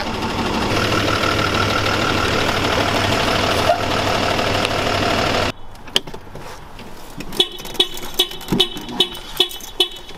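A box truck's engine running steadily, cut off suddenly about halfway through. A couple of seconds later a hip-hop beat of sharp, regular percussion hits with a low bass boom starts up.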